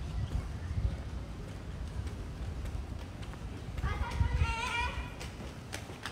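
Footsteps of someone walking on pavement while filming on a handheld phone, over a steady low rumble on the microphone. A brief high-pitched call sounds about four seconds in.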